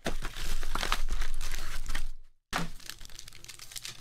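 Plastic shrink-wrap being torn and crinkled off a trading-card hobby box, dense crackling for about two seconds. A brief drop to silence follows, then softer crinkling as a foil card pack is handled.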